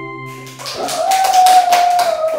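A chiming intro jingle fades out. About three-quarters of a second in, a loud, held high-pitched whine starts over a clatter of noise.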